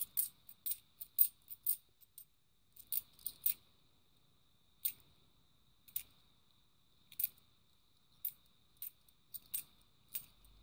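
Cupronickel 50p coins clinking against each other as they are shuffled by hand, one coin at a time. The sharp clinks come in quick clusters in the first couple of seconds and again around three seconds in, then more sparsely.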